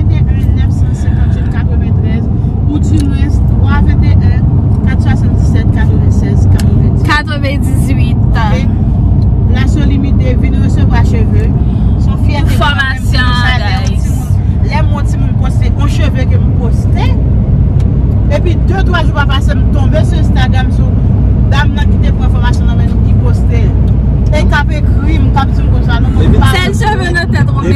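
Steady low rumble of a car driving, heard from inside the cabin, with people's voices talking over it.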